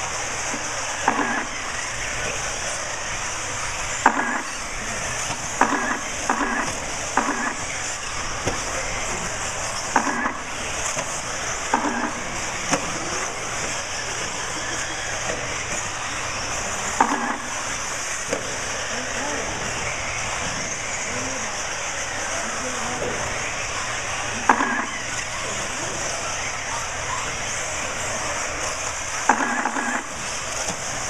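Eighth-scale RC off-road buggies racing laps: a steady high-pitched engine buzz, with occasional short knocks scattered through it.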